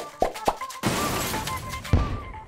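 Title-card jingle: music with sound effects, two sharp pops, then a long hissing wash under a few held notes, and a low thump near the end.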